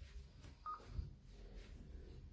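A single short, faint electronic beep from an Icom ID-52 D-STAR handheld transceiver, about two-thirds of a second in, over quiet room noise with a couple of faint low knocks.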